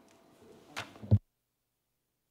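A sharp click, then a louder low thump about a second in, as a conference desk microphone is switched off; the sound then cuts to dead silence.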